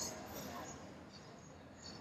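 Faint, distant voices of a played-back recording, a therapist and patient counting numbers aloud, heard over loudspeakers in a lecture room with quiet room hiss.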